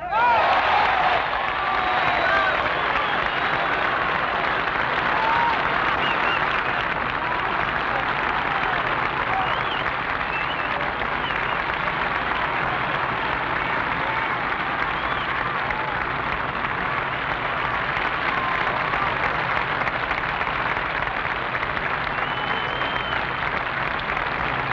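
A large golf gallery erupts in a sudden roar of cheering and applause as a birdie putt drops on the final green, then keeps up steady clapping and cheering, loudest in the first couple of seconds.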